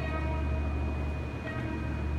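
Steady low hum of the room's background noise, with a thin constant high whine above it and faint music underneath.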